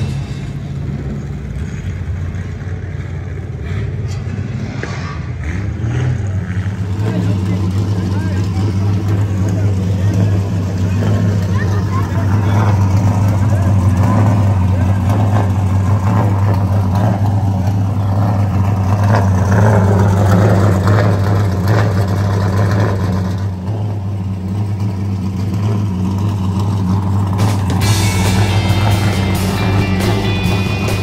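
Late model stock car's V8 race engine idling steadily with a deep, even drone, dipping briefly about three-quarters of the way through.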